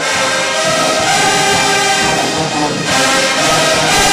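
College marching band playing loud, sustained full chords, with a dense brass sound.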